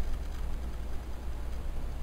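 Room tone between speech: a steady low electrical hum under faint hiss.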